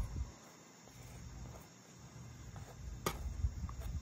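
Faint low noise of a knife spreading butter over a tortilla in a frying pan, with one sharp click of the knife about three seconds in.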